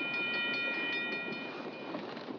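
Steam train whistle sounding one long, steady blast that ends just before the end, over the running noise of a moving passenger train.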